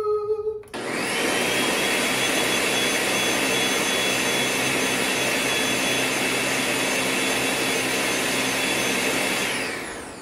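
Countertop blender running steadily, blending a pitcher of lime mixture. It starts just under a second in and winds down near the end. A short drawn-out voice note sounds right at the start.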